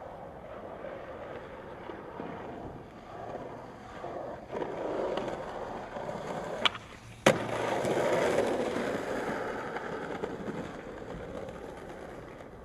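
Skateboard wheels rolling over rough asphalt, with two sharp clacks about half a second apart some six and a half seconds in, the second the loudest: the board popping and landing a trick, after which the rolling grows louder.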